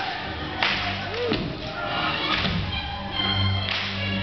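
Whip cracking in a staged fight: one sharp, loud crack a little over half a second in, then several weaker sharp cracks or hits, over background music.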